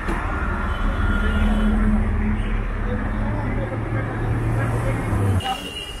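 Busy road traffic with a nearby vehicle engine running as a loud, steady low hum, which stops suddenly about five seconds in.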